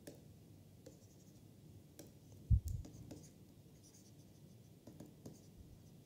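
A stylus scratching and tapping on a tablet while writing by hand, in faint scattered clicks and short scrapes. About two and a half seconds in, a short low thump is the loudest sound, followed by a softer one.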